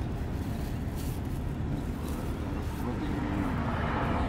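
Steady low rumble of a vehicle cabin, with faint voices in the background from about two seconds in.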